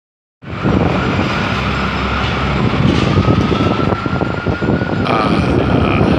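Busy city street traffic, led by a passing bus's engine running, with a faint high whine that rises slowly for a few seconds and stops near the end.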